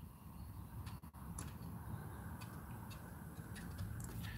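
Faint steady whir and hiss of a hot-air rework gun blowing on a surface-mount chip to melt its solder, with a few faint ticks.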